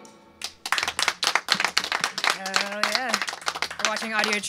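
A few people clapping in a small studio room as a song ends, starting about half a second in. A voice calls out over the clapping from about two seconds in.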